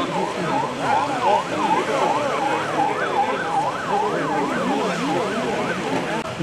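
Siren of a police convoy vehicle with a flashing light bar, a fast yelp rising and falling about two and a half times a second, with crowd voices underneath.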